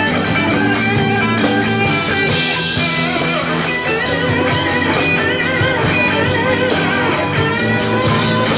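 Live rock band playing an instrumental passage: a guitar line with bending, wavering notes over a steady drum beat, with cymbal crashes about two seconds in and near the end.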